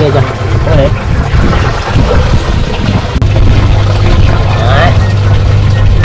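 Aquarium air pump humming steadily, with water bubbling in the tank.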